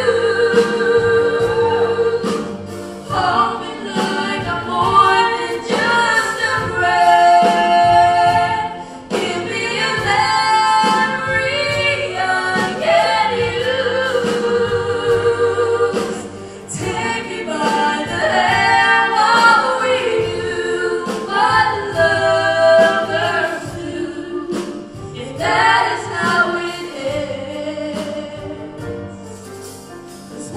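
Two female voices singing a duet into handheld microphones, holding long notes and trading phrases, amplified through the hall's sound system.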